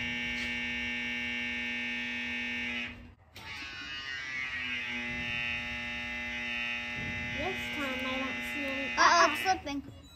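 Electric-over-hydraulic trailer brake actuator's pump motor running with a steady hum, pushing fluid and air bubbles out through the bleeder. It cuts out about three seconds in, starts again a moment later and runs on. Voices come near the end.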